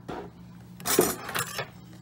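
Kitchenware clinking: one sharp clink about a second in, then a lighter one shortly after.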